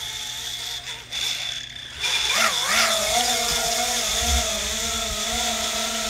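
Micro FPV quadcopter's small brushless motors spinning up about two seconds in with a rising whine, then running on at a steady, slightly wavering pitch as the quad moves under normal control after being flipped back upright by turtle mode.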